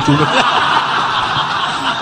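Audience laughing loudly together, many voices at once, in reaction to a joke.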